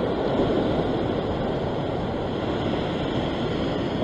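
Ocean surf washing over a rock ledge, a steady rushing of water with no distinct breaks.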